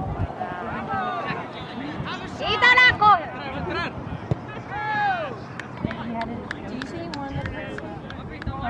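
Raised voices of players and spectators shouting across a soccer field, loudest in a high-pitched shout about two and a half seconds in, with a few sharp taps in the second half.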